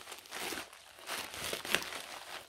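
Scissors cutting through the end of a padded plastic mailer, with the plastic crinkling as it is held and cut, in a few short, irregular snips.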